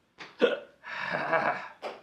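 A man laughing hard: a few short, sharp, gasping bursts and a longer breathy stretch in the middle.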